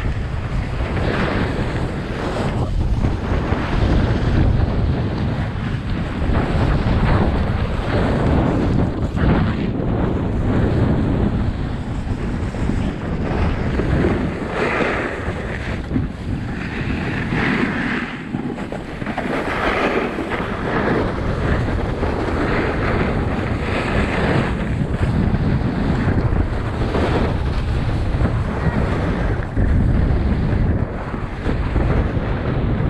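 Loud wind buffeting the microphone while skiing downhill at speed, with skis hissing and scraping over the snow in recurring bursts through the turns.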